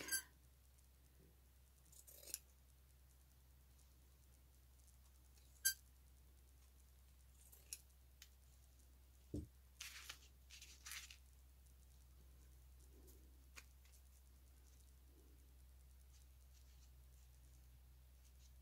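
Sparse, quiet crafting sounds over near silence: a few short scissor snips and clicks, a soft thump about halfway through, and a cluster of snipping and fabric handling soon after, then near silence.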